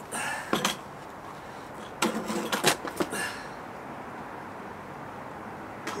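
Clicks and knocks from handling a petrol multi-tool's engine unit, a few just after the start and a cluster about two to three seconds in, then quiet; the engine is not running.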